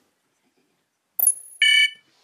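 Dead silence for about a second, then a short electronic sound: a quick high ping, then a louder, buzzy beep that cuts off near the end.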